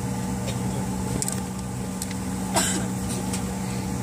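Steady hum of a jet airliner's engines and cabin as it taxis, heard from inside the cabin. There is a short burst of noise about two and a half seconds in.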